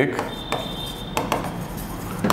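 Chalk writing on a blackboard: short scratchy strokes and taps as the letters are written, with a thin high squeak for about a second near the start.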